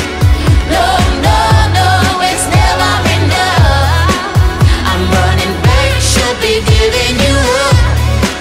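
Pop song: a singer's melody over a deep, held bass line and repeated kick-drum hits.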